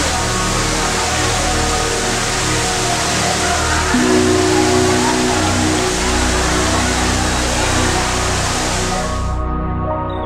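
Soft, slow piano music with sustained notes under a steady rushing hiss. The hiss fades out about nine seconds in, leaving the piano alone.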